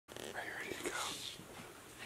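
A person whispering, a few soft words in the first second or so.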